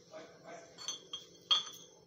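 Steel kitchen utensils clinking as they are handled: a few light metallic clinks with a short ring, the loudest about one and a half seconds in.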